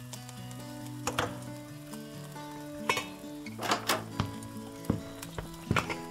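Food sizzling in a frying pan, with utensils and dishes clinking several times, over soft background music.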